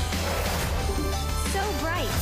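Online slot game's background music, with a rising gliding sound effect near the end as the win multiplier is applied and the reels clear for a new free spin.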